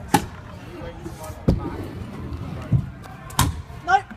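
Stunt scooter riding a skatepark mini ramp: wheels rolling on the ramp surface, with several sharp knocks as the scooter drops in, lands and hits the coping.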